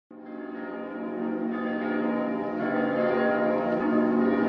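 Church bells ringing, many overlapping tones that start just after the opening and grow steadily louder.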